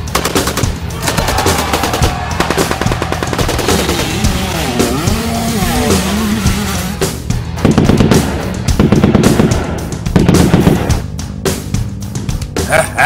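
Cartoon sound effects of rapid automatic gunfire over a background music track, with heavier bursts of fire in the second half.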